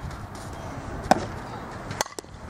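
One sharp smack of a softball striking a bat or a leather glove during an infield fielding drill, about a second in, over steady outdoor background noise.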